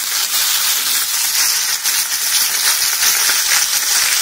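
Bite-sized pieces of pork belly sizzling in hot oil in a frying pan: a steady, loud hiss with light crackling as the meat fries.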